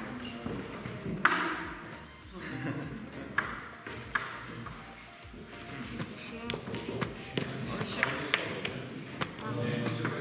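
Wooden chess pieces being moved and set down on a board during fast bughouse play: sharp clicks and knocks at irregular intervals, roughly one every second, the loudest about a second in.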